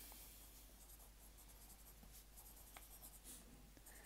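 Faint scratching of a pencil writing on lined notebook paper, in short, irregular strokes.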